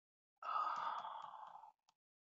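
A person sighing once, a long breathy exhale lasting a little over a second, heard over a video call.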